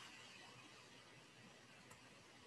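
Near silence: a faint steady hiss of background noise, with one tiny click near the end.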